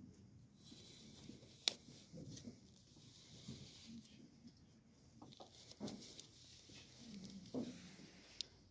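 Faint handling sounds of hardcover books being gripped and slid on a library shelf, soft rustling broken by a few sharp clicks and taps, the loudest about a second and a half in.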